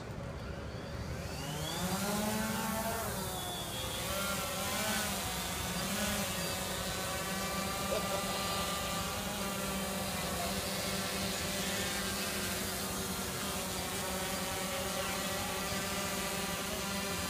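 Small multirotor drone's motors and propellers spinning up with a rising whine about two seconds in, wavering in pitch for a few seconds, then settling into a steady buzzing hum as it flies.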